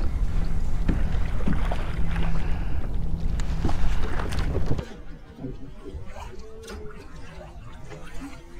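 Wind and water noise on a kayak-mounted camera microphone, a steady rushing with a low hum, while a hooked trout is fought at the surface. The noise drops away suddenly about five seconds in, leaving a faint man's voice.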